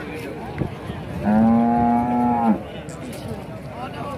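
A cow mooing once: one long call, level in pitch, lasting about a second and a half and starting just over a second in.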